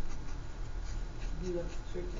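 Writing on paper: short, faint scratching strokes of a writing tip on a worksheet.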